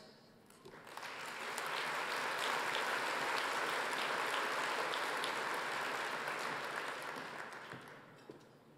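Audience applauding after a speech: the clapping builds up over the first two seconds, holds steady, and dies away near the end.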